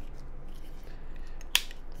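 Faint handling ticks, then one sharp metallic click about one and a half seconds in: the extended hammer of a Chiappa Little Badger single-shot .22LR rifle being thumbed back to cock.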